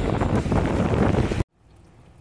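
Wind buffeting a phone microphone on an open beach: a loud, steady rush with a deep rumble, with waves washing in at the shoreline. It cuts off abruptly about a second and a half in, leaving a faint hush.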